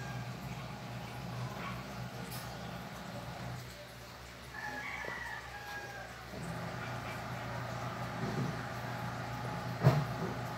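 Steady low hum from the aquarium equipment. About five seconds in, a faint, distant rooster crows once, and a sharp knock comes just before the end.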